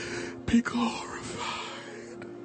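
A voice praying in a whisper, breathy and indistinct, with a sharp pop about half a second in, the loudest moment. A soft, steady held tone runs underneath.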